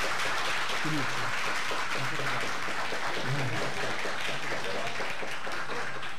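An audience clapping, a dense continuous applause that dies away at the end, with a man's voice briefly heard through it a few times.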